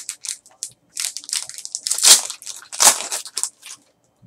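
Foil trading-card pack being torn open by hand, the wrapper crinkling and crackling in a quick run of rustles that peak about two and three seconds in.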